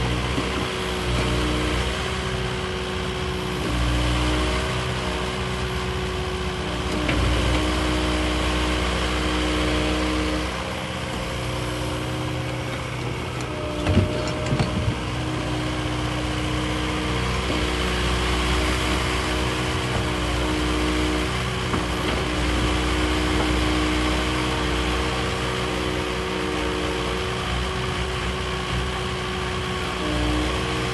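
Kubota KX080-4 excavator's diesel engine running while its hydraulics work a timber grab, the engine note rising and easing every few seconds as the arm is moved under load. A few sharp knocks come about halfway through.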